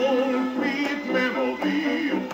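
A 1927 Banner 78 rpm shellac record playing on a phonograph through its reproducer and brass tone arm: a 1920s jazz dance band plays at a steady level.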